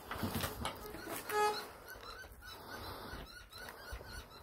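Hands scraping and scooping gravelly dirt from a small dig hole, with a short pitched tone about a second and a half in.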